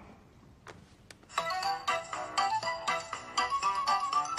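A mobile phone ringtone melody: after a quiet start with a couple of faint clicks, a string of quick, bright electronic notes begins about a second and a half in and keeps playing.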